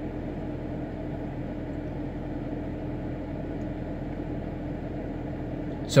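Steady hum and hiss of a car's cabin with the car running, holding level throughout.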